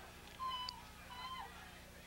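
Two faint, distant shouted calls, each about a quarter second long, one about half a second in and one just past a second, over a steady low hum.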